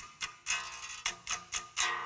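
Harley Benton single-cut DIY kit electric guitar played through an amp: single strings picked one after another, about seven quick notes, checking the tuning just after it has been dropped to a lower tuning. It is somewhat in tune.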